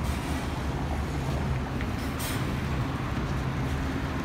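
Diesel engine of a large city bus running close by, a steady low hum, with a brief hiss about two seconds in.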